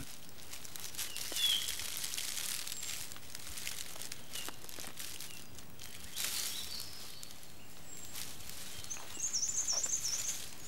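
Forest ambience: a few short high bird chirps, a high warbling bird song near the end, and a few brief rustles of branches.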